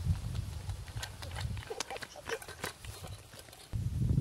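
Wind rumbling on the microphone, with a run of sharp clicks and short animal calls in the middle; the rumble comes back loudly near the end.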